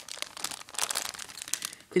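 Thin plastic Lego polybag crinkling as it is handled and turned over in the hand, a run of irregular crackles.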